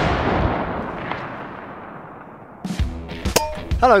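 The long fading tail of a boom-like gunshot sound effect dies away. About three seconds in, music with sharp percussive hits starts.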